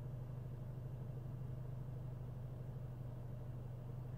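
Faint, steady low hum inside a parked car's cabin, with no other events.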